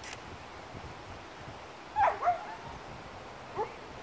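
A dog gives short, high yips: two close together about two seconds in and a single shorter one near the end.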